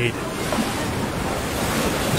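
Ocean surf breaking and washing over a rocky shore, a steady rushing noise, with wind buffeting the microphone.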